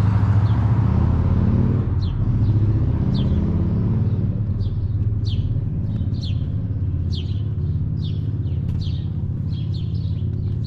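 A car passes on the street with a low rumble of traffic that slowly fades, while a bird chirps repeatedly from about two seconds in: short, falling chirps that come more often toward the end, about two a second.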